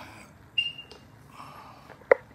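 Veteran Lynx electric unicycle giving a single short, high-pitched beep as it is switched on.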